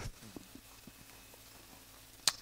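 Faint, sparse clicks of Bible pages being handled and turned on a pulpit.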